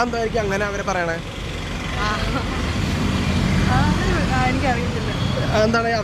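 Road traffic rumbling on a city street, swelling for a few seconds about two seconds in, beneath people talking.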